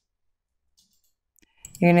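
Near silence with a faint computer-mouse click about one and a half seconds in, just before speech begins.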